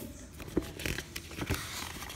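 Paper rustling as a picture-book page is turned by hand, with a couple of light knocks.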